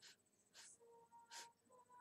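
Near silence: faint room tone, with three or four soft, short hisses.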